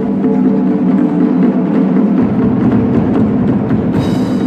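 Drum ensemble playing Chinese barrel drums: rapid, dense stick strokes with sharp clicking hits over ringing drum tones. Deeper, heavier strokes join about two seconds in.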